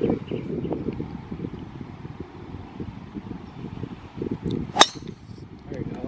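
A golf club striking a ball on a tee shot: one sharp crack nearly five seconds in. Wind rumbles on the microphone throughout.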